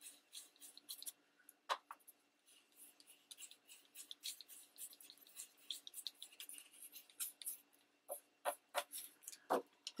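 Ink blending brush scrubbing ink onto the edge of a paper print: faint, irregular short scratchy strokes, several a second.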